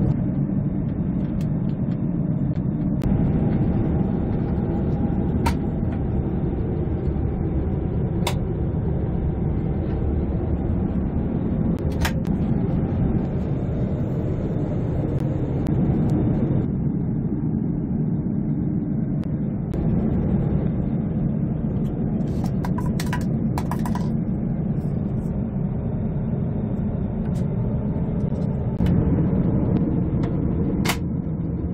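Steady in-flight cabin drone of an Airbus A350-900 airliner, heard inside its lavatory. A few sharp clicks come through it, with a short cluster of them a little past two-thirds of the way in.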